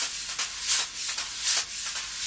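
Wire drum brushes swept across a coated drum head: a continuous brushing hiss with regular, brighter swish accents.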